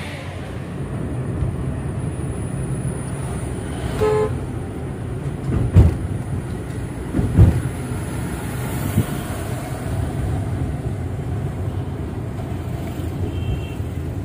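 Road and engine noise inside a moving car's cabin, a steady low rumble. A short horn toot comes about four seconds in, and two dull thumps follow a couple of seconds later.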